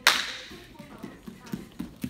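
A single sharp slap right at the start, fading quickly in the room's echo, followed by a few soft thuds of bare feet on the training mats.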